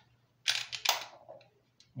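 Taurus G3C 9mm pistol being handled, its slide worked by hand: a quick cluster of sharp metallic clicks and clacks about half a second in, then a few lighter clicks.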